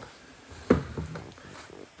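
Handling noise: one sharp bump about two-thirds of a second in, then faint rustling.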